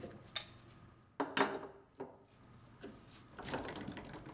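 Clunks and clicks of metal valve parts being handled: a drip pot with a supply gas regulator threaded onto it, turned in gloved hands and set on a workbench. There are several separate knocks, the loudest about a second and a half in.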